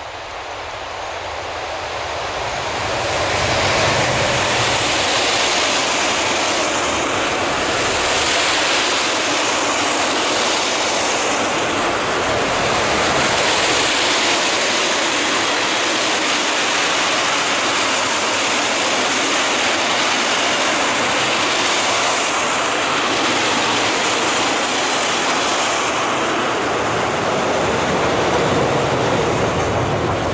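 A Newag Dragon 2 (E6ACTa) electric freight locomotive approaches and passes close by, growing louder over the first few seconds. A long rake of rail tank wagons then rolls past with steady, loud wheel-on-rail noise.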